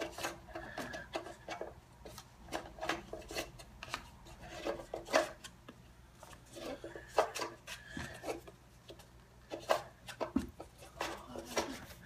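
Foam Nerf darts being pushed one at a time into a plastic 12-dart clip: irregular small plastic clicks and rubbing, a few louder knocks among them.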